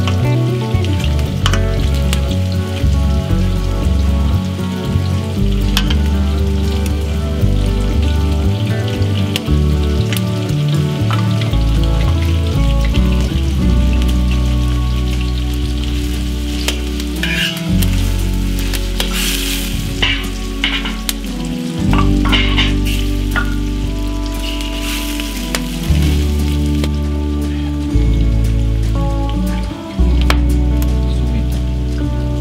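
Meat sizzling and frying in a wide steel kotlovina pan over a wood fire, with a few sharp clicks in the second half as tongs turn the pieces. Background music with sustained low notes plays underneath.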